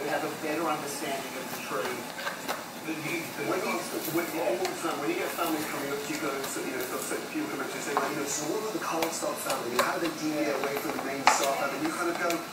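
A clear plastic blister package crinkling and clicking as a child handles it and works at opening it, with a few sharp plastic clicks near the end. Quiet voices go on underneath.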